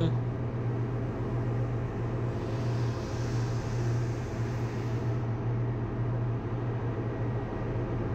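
Steady low hum of running ship engine-room machinery, heard from inside the main engine's scavenge air space, with a hiss that swells from about two and a half to five seconds in.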